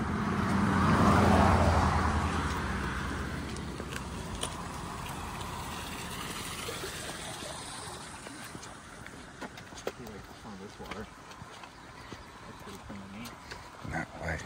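A car passes on the road close by, its engine and tyre noise swelling to a peak about a second in and fading away over the next few seconds. Light footsteps and taps of trekking poles on pavement follow.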